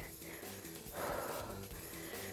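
A woman breathing out hard as she pedals a spin bike, a noisy breath about a second in, over faint background music.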